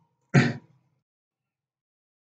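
A man clearing his throat once, briefly, about a third of a second in.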